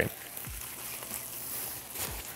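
Rustling of a lightweight waterproof rain poncho's thin fabric as it is pulled out of its stuff sack and unfolded by hand: a steady, soft crinkling.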